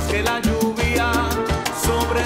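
Salsa romántica music playing, an instrumental stretch with a bass line that moves every half second or so under regular percussion strokes.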